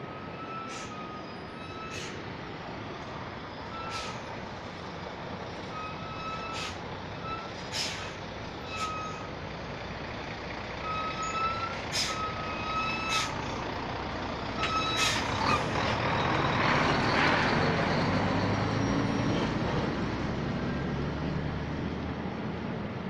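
Steady rushing roar of Victoria Falls, growing louder about fifteen seconds in. Through the first part it carries a dozen or so short, high squeaks and sharp clicks.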